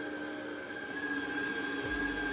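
Kenwood stand mixer running steadily at low speed, its dough hook kneading pizza dough, with a steady motor whine at two pitches.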